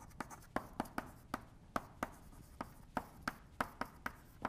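Chalk writing on a blackboard: a quick, irregular run of sharp taps and short strokes, about four a second.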